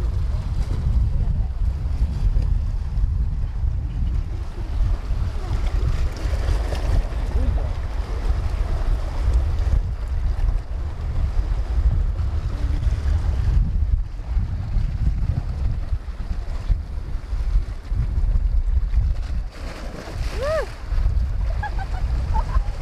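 Wind buffeting the microphone in a steady, gusting rumble, over sea waves washing against the rocks below.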